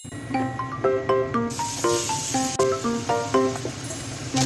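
Light background music of short staccato notes. About one and a half seconds in, a steady sizzle starts up: minced meat and vegetables frying in a frying pan.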